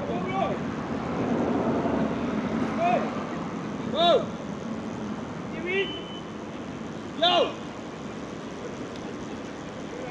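A man calling out from a distance in short single shouts, five of them spread across a few seconds. Under them runs a steady background hum.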